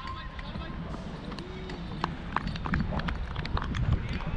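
Irregular footsteps and small knocks from a wicket keeper moving about on a dirt pitch, picked up by a helmet-mounted camera over a low rumble.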